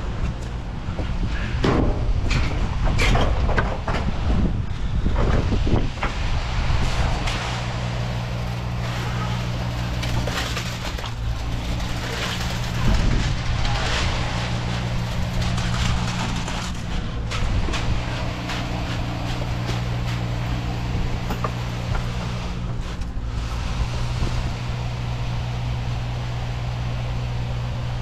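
Concrete pump truck running steadily, with irregular surges and knocks as concrete is pushed through the hose into a footer trench.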